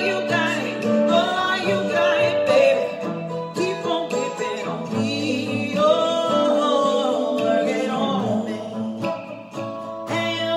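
A woman singing, holding long notes, to her own strummed acoustic guitar.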